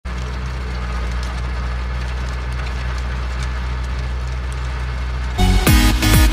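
Tractor engine running steadily while it pulls a rotary tiller through the soil. Electronic dance music cuts in suddenly near the end.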